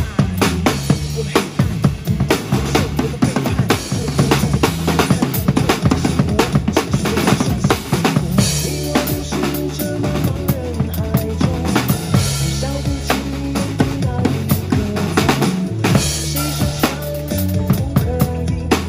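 Acoustic drum kit played live: a busy pattern of bass drum, snare and cymbal hits over a recorded pop backing track with a steady bass line and no vocals.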